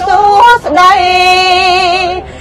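A woman singing Khmer smot, Buddhist chanted poetry, solo into a handheld microphone: a short bending phrase, then one long held note with a slight waver.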